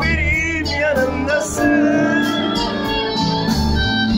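Live band playing a song: acoustic guitars and bass with voices singing.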